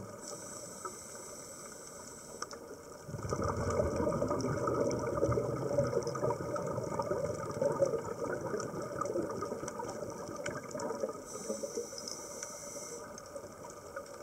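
Scuba breathing heard underwater: a diver's regulator hisses on an in-breath, then a long exhalation sends up a stream of bubbles that rumble and crackle for several seconds, and a second in-breath hiss comes near the end.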